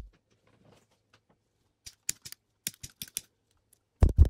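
A quick run of light clicks and taps, about ten in all, from small hard objects being handled and set down on a table. It starts a little under two seconds in and stops after about three seconds.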